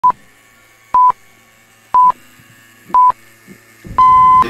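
Film-leader countdown sound effect: a short, high, pure beep once a second, four times, with a longer beep of the same pitch starting right at the end.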